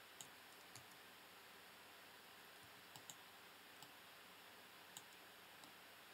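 Near silence with about seven faint, short computer mouse clicks, spaced irregularly.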